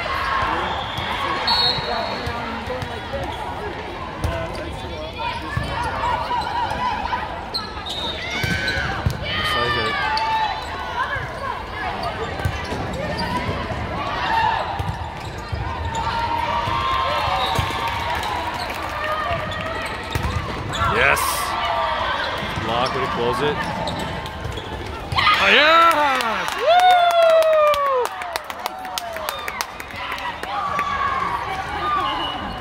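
Indoor volleyball rally in a large, echoing hall: the ball being struck amid players' calls, then a burst of loud shouting and cheering from the players about three quarters of the way through as the point is won.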